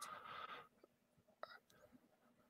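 Near silence, opening with a short breathy sound from a person's voice in the first half-second, followed by a faint click about a second and a half in.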